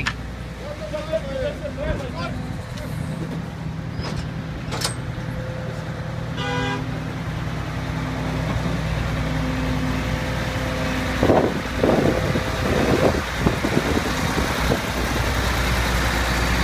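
Diesel engine of a garbage compactor truck idling steadily, with a brief horn toot about six and a half seconds in. The engine hum grows louder in the second half.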